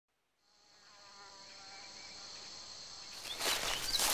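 Night-time insect chorus of crickets, a steady high buzz fading in from silence and growing louder. Bird calls join near the end.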